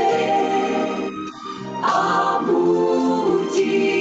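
Choir singing a hymn, with a short break between phrases about a second in before the voices come back.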